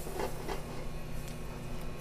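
Steady kitchen hum with a few faint crackles from a sauté pan of shrimp in Creole sauce simmering and reducing over a gas burner.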